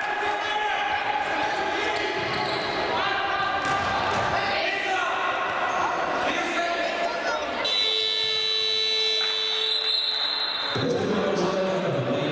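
Futsal in a sports hall: the ball thuds on the floor and players' voices echo around the hall, then an electronic buzzer sounds one steady tone for about three seconds near the end, the timekeeper's signal that stops play.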